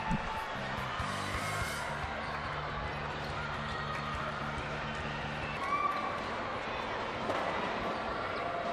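Music over a basketball arena's sound system, with held low notes that stop a little past halfway, over the general hubbub of the crowd in the gym.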